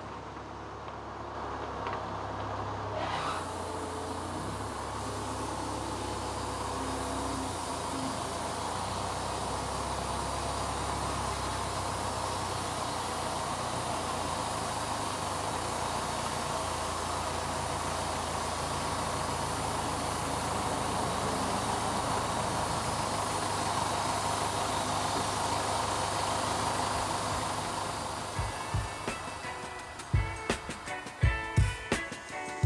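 Hyster forklift engine running steadily while it carries and sets down a log, its pitch shifting a few times with throttle. The sound fades near the end.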